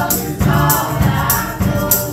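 Live folk-rock band performing, with three women singing close harmony over a drum kit. Percussion strikes land steadily, about one every half second or so.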